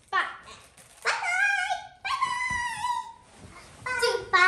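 Two long, high, wavering dog-like whines, each about a second long, with a short knock just before them.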